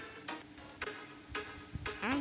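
Background music with a steady ticking beat, about two ticks a second, over a held low tone.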